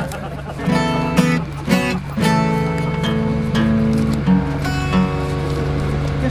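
Acoustic guitar being strummed and picked, chords struck roughly once a second and left ringing, with a steady low hum underneath.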